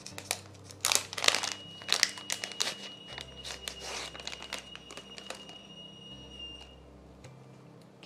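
Clear plastic packaging bag crinkling and crackling in irregular bursts as it is handled and opened and a nail file case is pulled out. The crackling is busiest in the first half and thins out toward the end.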